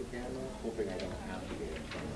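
A pause in conversation: faint murmur of distant voices over room tone.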